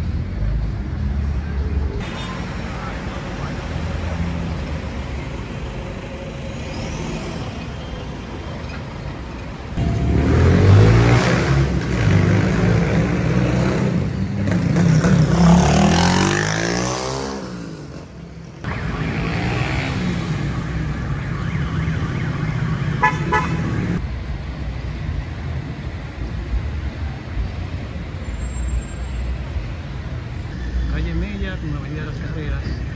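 City street traffic: a steady low rumble of road vehicles, with a louder passing motor vehicle from about ten seconds in whose engine pitch sweeps up and then falls away as it goes by.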